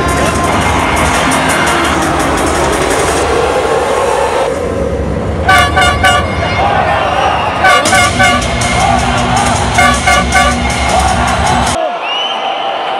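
Music with a steady beat, then a loud horn tooting in quick bursts of three blasts, repeated three times about two seconds apart.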